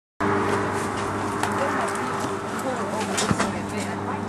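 A steady engine hum, typical of a vehicle idling, with low voices talking and a couple of short knocks, one about a second and a half in and another near the end.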